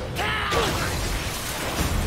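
Anime battle-scene audio: a man's brief shout over clattering, mechanical-sounding battle effects and music.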